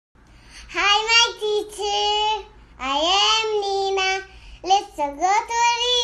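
A young girl singing three short phrases in a high voice with long held notes; the last phrase slides down in pitch at its end.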